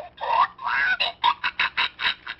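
Strangled, squawking chicken cries from a plush chicken toy as a hand squeezes its neck. There are two drawn-out gliding squawks, then a rapid string of short squawks, about six a second.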